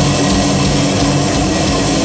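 Metal band playing live: heavily distorted electric guitars over drums, a loud, dense wall of sound with sustained low notes.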